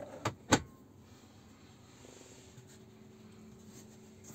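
Tesla Model Y glovebox lid pushed shut: two sharp plastic clacks in quick succession, the second louder as it latches. A faint steady hum follows.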